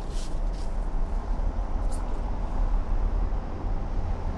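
Outdoor street background noise: a steady low rumble, with a few faint brief clicks.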